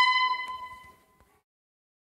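Keyed wooden woodwind instrument holding the last note of a folk dance tune. The bright note dies away about a second in, followed by a faint key click and then silence.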